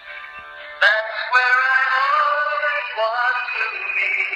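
Worship song playing: a sung voice over backing music, thin-sounding with almost no bass. It is softer at first and the voice comes back in strongly about a second in.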